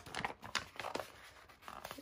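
Paper sticker sheet crinkling and rustling as it is handled, with small irregular crackles.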